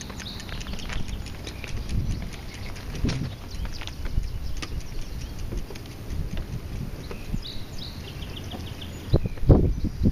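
Footsteps and bicycle and child-trailer wheels rolling over the planks of a wooden footbridge: a run of irregular knocks and clicks on the boards, with a few heavier thumps near the end.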